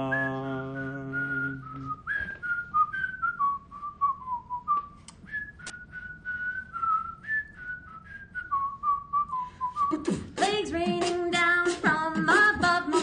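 A cappella voices hold a low chord, which fades out about two seconds in; then a person whistles a melody alone, note by note, for about eight seconds. Near the end the group comes back in with singing and sharp vocal-percussion clicks.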